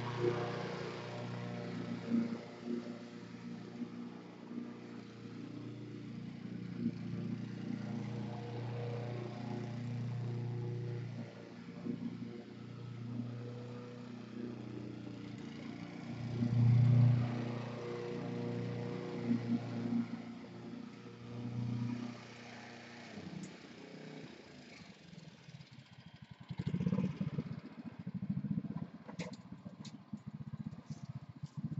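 A motor or engine running, a low hum of steady pitch that swells and fades, loudest about halfway through, then dying away, with a patch of rattling clatter near the end.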